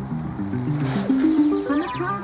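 Music playing from a car stereo, a melody of short held notes stepping up and down.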